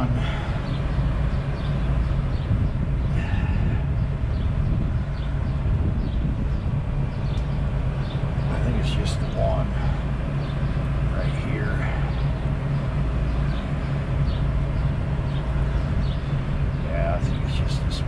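Steady low drone of an idling diesel truck engine, with a few short faint chirps on top.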